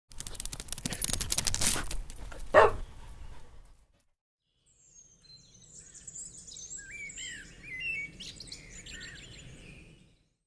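Birds chirping and singing, many short rising and falling chirps. They come after a loud, noisy rattle of rapid clicks lasting about three seconds, with a sharp sweep near its end, and a second of silence.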